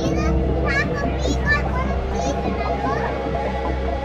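Children's voices and chatter in a crowded aquarium gallery, heard over soft ambient music with long sustained notes and a steady low hum.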